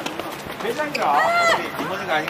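Voices calling out on a tennis court, the clearest a high voice held for about half a second about a second in, rising and falling in pitch.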